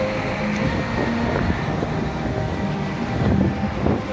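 City street noise: traffic rumble with wind buffeting the phone's microphone.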